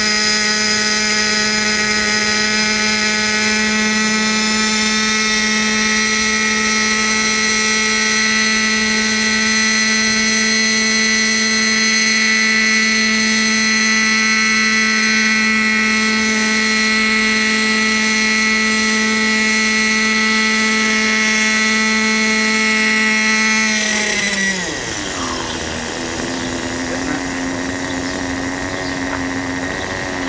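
Raptor 30 RC helicopter's nitro glow engine and rotor running at a steady high pitch while it hovers low. Near the end the pitch falls sharply and the sound gets quieter as the engine slows, and it settles to a lower steady speed with the helicopter on the ground.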